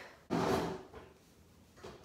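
A drawer sliding, a short sudden scrape about a third of a second in that fades within half a second, with a faint knock near the end.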